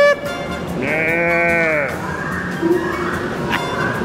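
A single long bleat like a sheep's, rising and falling in pitch, about a second in, over background music.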